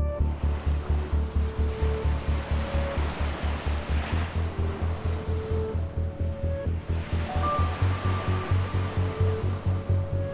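Small waves washing onto a sandy beach, the surf swelling and falling away twice, under background music with a steady fast low pulse and a few held notes.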